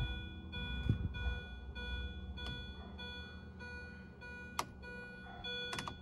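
A steady electronic warning tone with several overtones, broken by a few short gaps. Sharp clicks come about four times as switches are worked.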